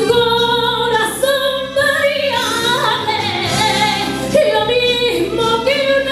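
A woman singing a Spanish song into a microphone over musical accompaniment, in long held notes that waver and slide between pitches.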